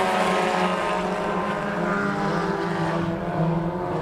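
A pack of front-wheel-drive four-cylinder sport compact race cars running together at speed, their engines making a steady drone of several overlapping tones that drift slightly in pitch.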